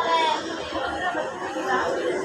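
Indistinct chatter of people talking, their words not picked out.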